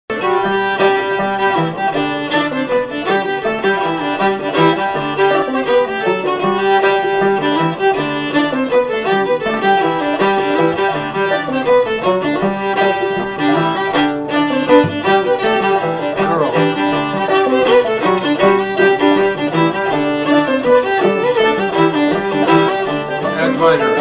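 Fiddle and banjo playing an Ozarks fiddle tune together, the fiddle carrying the melody over the banjo's steady picked accompaniment.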